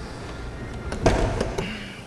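A single light knock about a second in, over quiet room tone.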